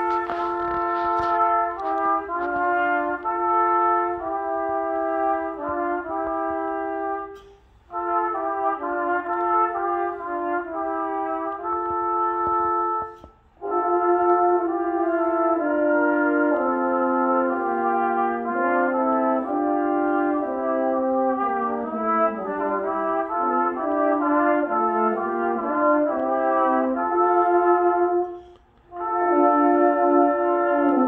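Brass quintet of trumpets, French horn and low brass playing slow, held chords in harmony. The phrases break off briefly three times, about a quarter of the way in, near the middle and near the end.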